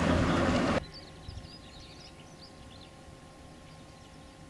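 Loud, steady rumble and rattle of a gondola lift's running gear and station machinery as a cabin passes through the station. It cuts off abruptly under a second in, leaving quiet open air with small birds chirping.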